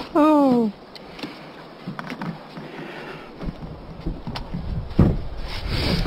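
A short vocal 'whoa' falling in pitch at the start, then faint knocks and one sharper thump about five seconds in, from a kayak bumping against the launch dock.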